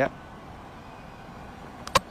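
Steady low background hiss from the ground, then just before the end a sharp, very short knock, two clicks close together, as the cricket ball is struck at the crease.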